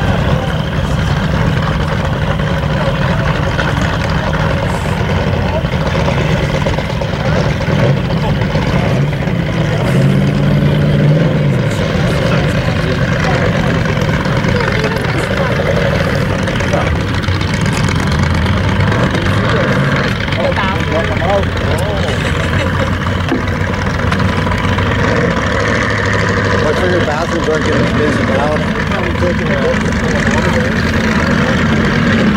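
Hobby stock race cars' engines idling and running slowly under a caution, a steady low engine drone with small shifts in pitch as cars move.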